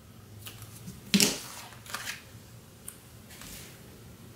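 Small scissors cutting a piece off a roll of washi tape: a few light clicks and one sharper snip about a second in, then soft paper and tape handling.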